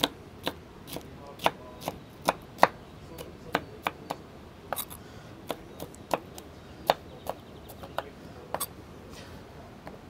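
Kitchen knife dicing red bell pepper on a wooden cutting board: sharp knocks of the blade striking the board, irregular at about two a second, stopping about a second before the end.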